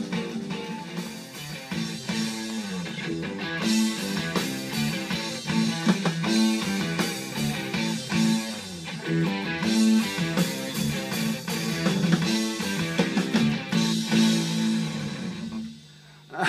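Blues band rhythm section playing, with guitar to the fore over steady bass notes; the playing stops just before the end.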